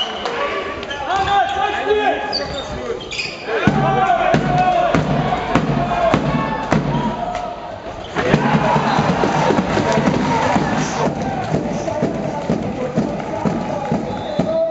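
A handball bouncing on a sports hall floor, with shouting players and crowd noise in the hall. The crowd grows louder about eight seconds in.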